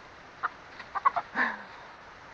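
Chickens clucking in a few short calls, the loudest about one and a half seconds in.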